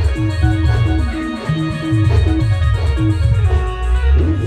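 Live timli band music: a short plucked melodic figure repeating over a steady, heavy bass beat.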